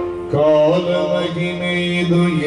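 Yakshagana bhagavata singing a drawn-out, chant-like vocal line over a steady drone. The voice enters about a third of a second in.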